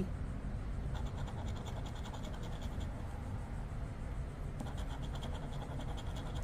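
A metal coin scratching the coating off a paper scratch-off lottery ticket in quick, rapid rasping strokes, with a short lull a little past halfway.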